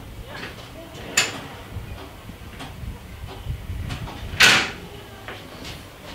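Handling noises at a control panel: a sharp click a little after a second in and a louder short knock about four and a half seconds in, with smaller clicks between, over a low rumble.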